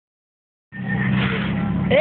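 After a brief silence, four-cylinder car engines idling steadily as drag cars wait at the start line. A voice begins right at the end.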